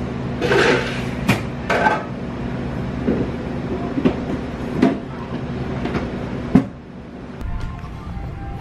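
Coffee-shop counter sounds: a steady machine hum with scattered knocks and clatter of cups and utensils. The hum drops away right after a sharp knock near the end.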